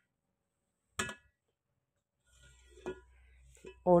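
A metal serving spoon clinking against a stainless-steel cooking pot: a short ringing clink about a second in and a fainter one near three seconds, over a faint low hum.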